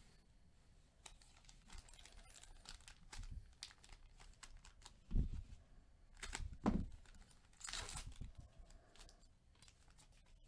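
Foil wrapper of a trading-card pack crinkling and tearing open under gloved hands, with two thuds about five and six and a half seconds in and a burst of crackling near the end.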